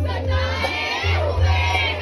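A man singing a Kashmiri folk song in long, wavering high notes over a harmonium's steady drone.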